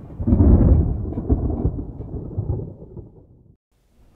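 A deep, thunder-like rumble sound effect that swells up about a third of a second in and dies away over about three seconds.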